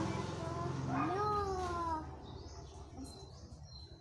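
A single drawn-out call, rising and then falling in pitch and lasting about a second, followed by a few faint high chirps.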